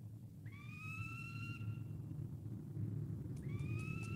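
Two long whistled tones, each sliding up and then holding steady, about three seconds apart, over a low steady rumble. Near the end a quick, even run of clicks begins.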